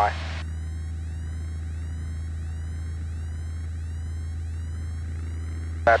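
Piper Warrior's four-cylinder Lycoming engine and propeller in cruise, a steady low drone heard through the cockpit intercom.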